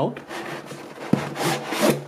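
Packing tray being pulled out of a cardboard box, scraping and rubbing against the cardboard. There is a knock about a second in, then a louder scrape.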